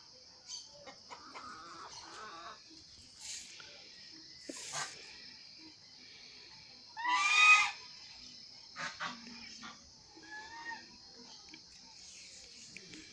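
Farmyard poultry calling: one loud, drawn-out call about seven seconds in and a softer, shorter one a few seconds later, over a steady high-pitched background.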